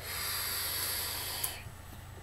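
A long draw on a vape with a rebuildable atomizer: a steady hiss of air pulled through the firing coil for about a second and a half, with a click near the end before it stops.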